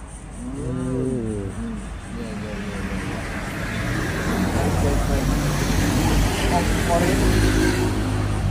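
A motor vehicle passing on the road, its engine and tyre noise with a low rumble swelling over the last five seconds. About a second in, a drawn-out rising-and-falling vocal groan.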